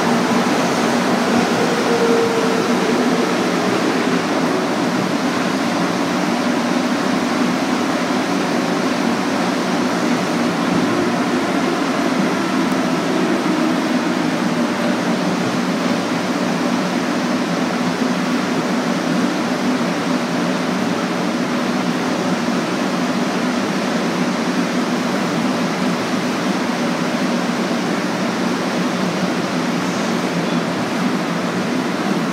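Steady running noise inside a 1966 MR-63 rubber-tyred Montreal metro car in a tunnel, with a brief faint whine a couple of seconds in. The level eases slightly toward the end.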